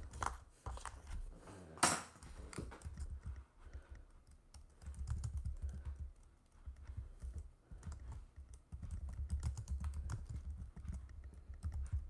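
Typing on a keyboard: irregular runs of light key clicks with dull thumps, in several bursts with short pauses between them.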